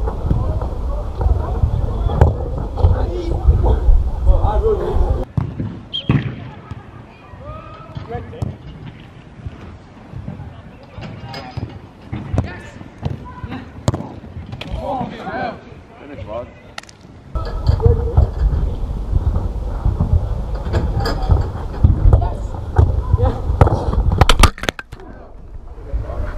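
Players' shouts and calls on an outdoor five-a-side pitch, with short sharp knocks of the football being kicked. In two stretches, at the start and again from about two-thirds of the way in, a heavy low rumble of wind buffeting the microphone swamps everything, and it cuts off abruptly each time.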